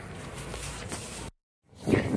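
Steady outdoor street background noise with a low rumble and no distinct events, breaking off into a brief dead silence at an edit a little over a second in.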